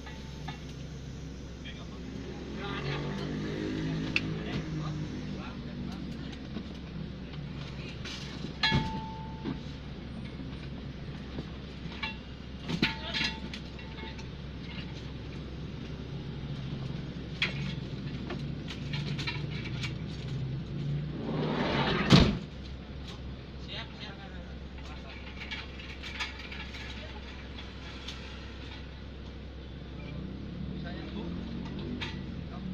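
Muffled voices and scattered knocks and clatter as a patient on a stretcher is unloaded from the back of an ambulance, over a steady low hum. A loud thump comes about 22 seconds in.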